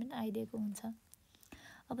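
Only speech: a teacher's voice explaining a grammar lesson, with a pause of about a second in the middle before the talk resumes.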